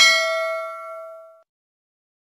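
Notification-bell chime sound effect: a single ding with several ringing tones that fades out over about a second and a half.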